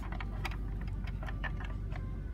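Light, irregular ticks and clicks over a low steady hum.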